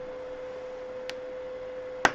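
A steady single-pitched hum held at one note, over a faint hiss, with one brief click about a second in.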